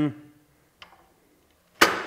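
Metal frame parts of a flexible LED panel being handled: a faint tick a little under a second in, then one sharp, loud click near the end.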